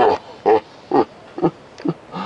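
A man's voice making a run of five short wordless vocal sounds, about two a second, each dropping in pitch.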